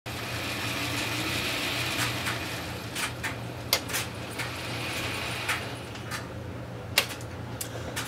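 A small mechanical whirr, typical of a model locomotive's electric motor and gears, runs and then winds down about six seconds in. Light sharp clicks come at uneven intervals as the knob of a homemade model railroad power controller is worked.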